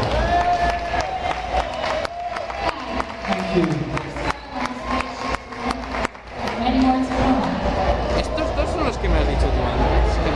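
Amplified live vocals through a stage PA, with long held notes and slow pitch glides rather than ordinary talk, over a run of sharp clicks and some crowd noise.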